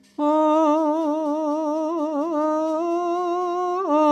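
A singer's voice sets in suddenly just after the start and holds one long sung note with wide, wavering vibrato, stepping slightly down in pitch near the end. It is the drawn-out opening vowel of a Javanese sung mood song (suluk), over soft gamelan.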